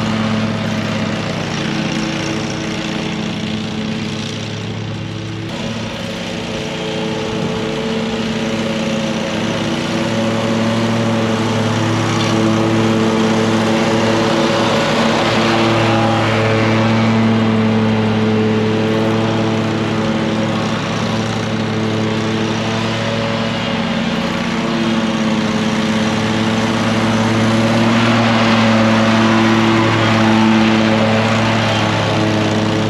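Engine of an Exmark Vertex stand-on commercial mower running steadily under mowing load. It gets louder toward the end as the mower comes close.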